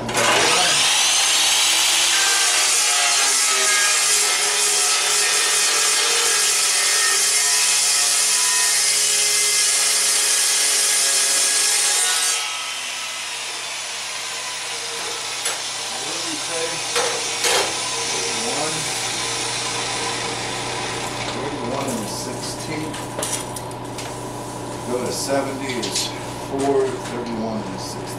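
Abrasive chop saw starting up and cutting through steel bar stock for about twelve seconds, then switched off and winding down. Clicks and knocks of the bar being moved in the saw's vise follow.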